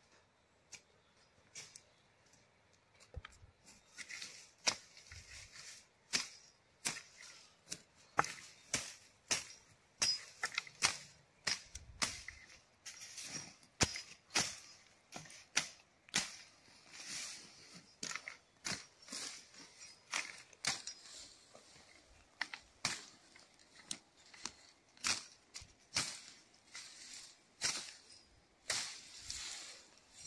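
Machete cutting through dry bracken fern and brush: an irregular series of sharp chops, about one or two a second, some followed by a brief swish of snapping, rustling stems. It starts a few seconds in.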